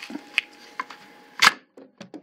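A vegetable wedger's stainless blades forced down through a raw potato: a couple of small clicks, then one loud sharp crack about a second and a half in as the potato splits into wedges.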